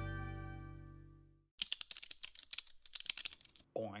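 A strummed acoustic guitar chord rings and fades away over the first second and a half. Then comes about two seconds of quick, irregular clicking like typing on keys.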